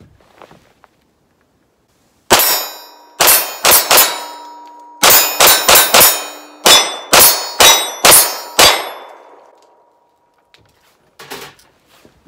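SAR B6C 9mm pistol firing about sixteen shots in several quick strings beginning about two seconds in, with the steel plate targets clanging on hits. A steel ring carries on and fades for about a second after the last shot.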